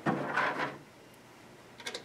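A retaining clip slid against the canopy light fixture's frame and gasket: a brief scrape at the start, then a few light clicks near the end as it is set over the screw hole.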